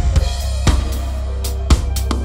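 Instrumental intro of a rock song: the drum kit comes in with kick, snare and cymbal hits, the heaviest about a second apart, over a steady low bass note.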